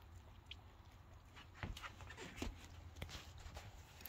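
An Aussiedoodle puppy licking and mouthing a peanut-butter-filled chew toy: faint, scattered clicks and soft taps, a few to the second, over a low hum.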